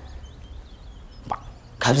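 A pause in a man's spoken stage monologue: low steady hum with a single short pop about a second and a quarter in, then his voice resumes just before the end.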